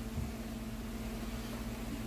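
Steady low hum with a soft even hiss and no distinct event.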